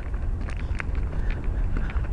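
Street background noise on a handheld camera carried along a sidewalk: a steady low rumble of traffic and wind on the microphone, with a few light ticks.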